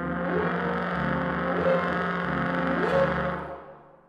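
Brass ensemble of French horn, tuba and trombone holding one loud sustained chord over a deep tuba bass, with a rising slide twice in the middle; it dies away near the end.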